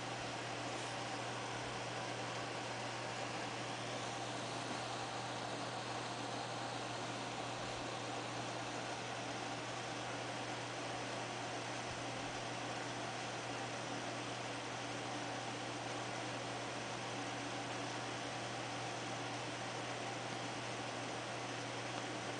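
Steady background hiss with a constant low hum and no distinct events: the room tone or recording noise floor.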